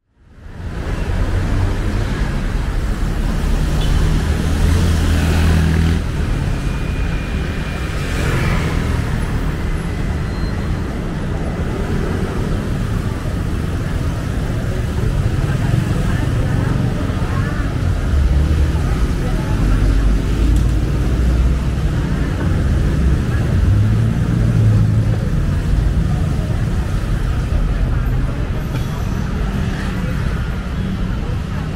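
Busy city street ambience: a steady rumble of road traffic passing close by, with passers-by talking. It fades in from silence at the start.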